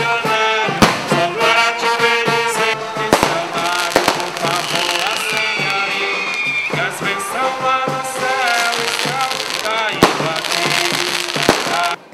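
Brass band with trombones playing, cut through by sharp bangs of stick rockets (foguetes) several times. A high whistle falls in pitch near the middle.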